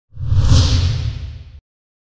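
TV channel logo ident sound effect: a whoosh over a deep rumble that swells in the first half-second, fades, then cuts off suddenly about a second and a half in.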